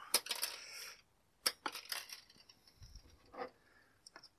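Quiet rustling of dry broom straw as its binding wire is worked loose, then a sharp metallic click about a second and a half in and a few lighter clicks of the wire and side cutters.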